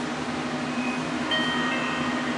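Steady low hum under an even rushing noise, with a few faint held tones above it.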